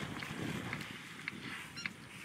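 Wind blowing on the microphone, making an uneven low rumble.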